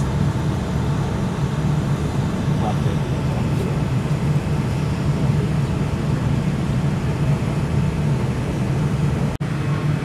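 Airliner cabin noise: a steady low hum with an even rush of air over it, cut off for an instant near the end.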